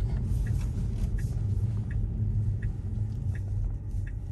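Steady road and tyre rumble heard inside a Tesla electric car's cabin on a wet street, with a faint tick repeating about every 0.7 seconds from the turn signal.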